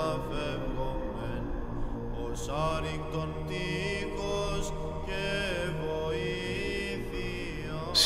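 Slow chant sung by voices, the melody moving in long, gliding notes over a held low drone.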